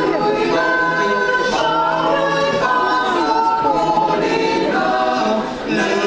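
Mixed choir of women's and men's voices singing a Christmas carol a cappella, in held chords that move every second or so, with a short breath pause near the end.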